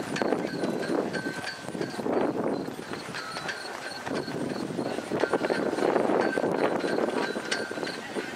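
A horse cantering on a sand show-jumping arena: a rhythmic run of hoofbeats on the soft footing, swelling and fading as it passes. A faint high tone pulses a few times a second in the background.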